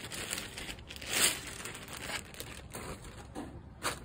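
Wrapping crinkling and tearing as an item is unwrapped by hand, loudest about a second in.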